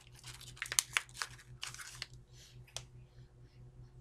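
A foil tuna pouch being torn open and crinkled: a run of sharp rips and crackles over the first three seconds, then faint sniffing as the opened pouch is smelled near the end.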